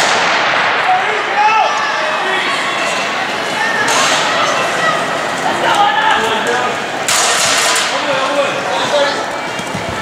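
Starter's pistol shot at the start of a hurdles race, its report ringing through a large indoor hall. Spectators then shout and cheer throughout the race, with a sudden louder burst about seven seconds in.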